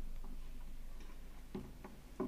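A low rumble fading away, with a scattering of soft, irregular clicks and knocks, about six in two seconds.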